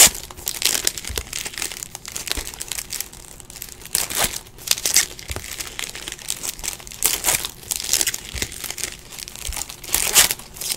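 Trading-card pack wrappers crinkling as packs are opened and cards handled, in irregular bursts of rustling, loudest about four to five seconds in and again around seven to eight seconds.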